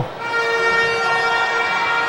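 A steady, horn-like pitched tone with several overtones, setting in a fraction of a second in and held without change of pitch.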